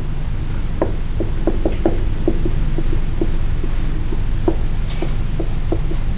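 Dry-erase marker writing on a whiteboard: short, irregular taps and squeaks of the marker tip on the board, several a second, over a steady low hum.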